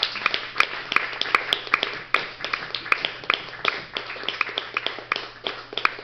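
A small audience applauding, with many individual claps heard one by one.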